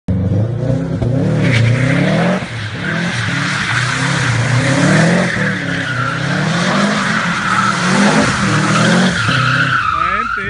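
A car drifting, its tyres squealing continuously while the engine is revved up and down again and again to keep the slide going.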